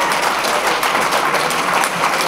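Audience applauding: a dense patter of many hands clapping.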